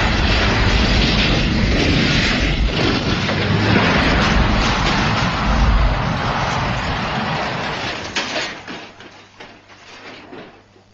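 A heavy tanker truck crashing and rolling over: a long, loud crashing rumble, with a few last impacts about eight seconds in before the noise dies away.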